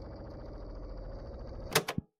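A low, steady ambient drone with a faint crackle, broken near the end by two sharp clicks in quick succession, after which the sound cuts off suddenly.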